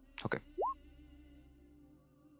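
A short rising 'bloop' notification tone from a computer, sounding once about half a second in, over faint background music.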